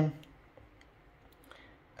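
A few faint, sharp clicks in an otherwise quiet room, just after a spoken word trails off.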